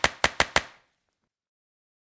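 A quick run of sharp clicks or knocks, four of them in the first half-second, each dying away fast.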